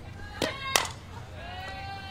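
A softball bat cracks sharply against the ball about three-quarters of a second in as the pitch is hit foul, a fainter click just before it. Near the end a spectator lets out a long, drawn-out shout over the steady murmur of the crowd.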